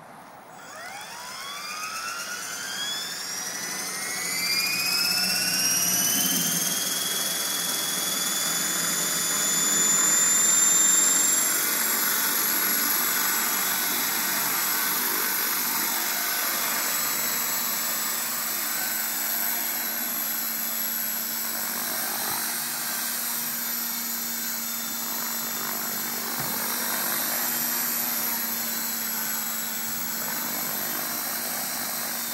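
CopterX 500 electric RC helicopter's brushless motor and rotor spooling up: a high whine rising in pitch over the first ten seconds or so, then holding a steady whine with rotor blade noise as the helicopter hovers.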